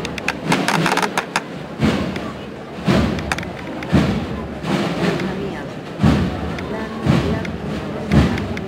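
Heavy, slow thuds at roughly one-second intervals, keeping a measured processional beat over the murmur of a crowd.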